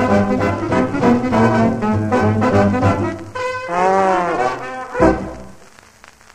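Dance band with brass to the fore playing the closing bars of a 1936 fox trot on a 78 rpm shellac record. A little past halfway a held note swoops up and back down. A final chord lands about five seconds in and dies away.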